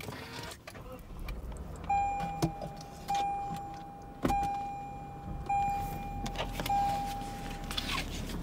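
An electronic warning chime sounding one steady pitch, struck five times a little over a second apart, each ring fading before the next.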